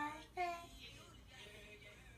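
A voice sings out a held word in the first half-second. Faint music with singing carries on quietly after it.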